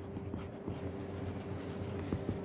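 Stylus tip tapping and sliding on a tablet's glass screen as handwriting is written, faint small ticks over a steady low hum.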